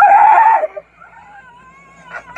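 Women's hysterical laughter: a loud, high-pitched shriek of laughter that breaks off after under a second, followed by a thinner, wavering high squeal.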